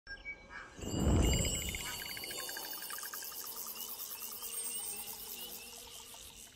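A chorus of insects chirping in fast, steady pulses, with a low boom about a second in that is the loudest thing heard; the chirping fades out near the end.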